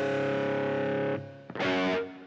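Distorted electric guitar chord held and ringing, cut off a little after a second in; a second distorted chord is struck about a second and a half in and rings briefly as the rock song ends.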